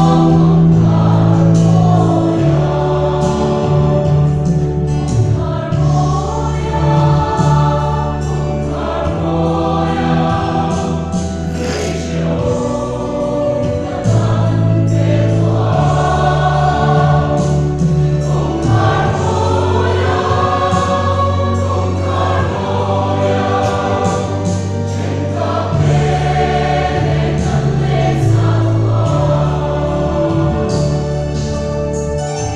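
Mixed church choir singing a hymn together, over an electronic keyboard accompaniment holding long bass notes that change every second or two.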